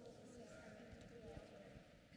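Near silence in a church: faint, distant voices with soft low thuds.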